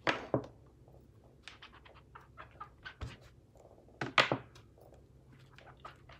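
Clear acrylic stamp block pressed and tapped down onto scrap paper on the desk to stamp off excess ink: a sharp knock at the start and another about four seconds in, with small light taps in between.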